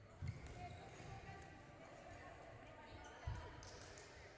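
Badminton players' footfalls on a sports-hall court floor, with two low thumps, one about a quarter second in and one about three seconds later. Faint racket-on-shuttlecock clicks and distant voices echo in the hall.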